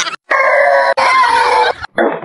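A pitched sound effect dropped into the edit: one long call in two parts, lasting about a second and a half, like a rooster crowing.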